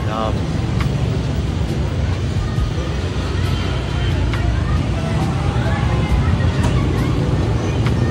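Steady low rumble of street traffic, with voices chatting faintly in the background and a few short clicks.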